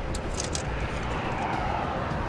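Steady outdoor background noise with a low rumble, and a couple of faint brief clicks in the first half second.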